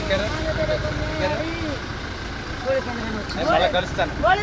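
A car engine idling with a low steady rumble, under men's voices talking close by.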